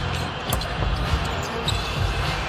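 A basketball being dribbled on a hardwood court, several low thumps, with a sharp click about half a second in.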